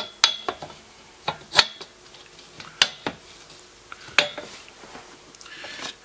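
Irregular sharp metallic clinks and knocks, about eight in all, from a folding table's metal leg bar and fittings being handled and fitted back onto its rotocast plastic tabletop during reassembly.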